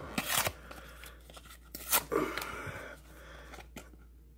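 Cardboard football trading cards torn in half by hand: two short ripping tears, one just after the start and one about two seconds in, with card rustling between them.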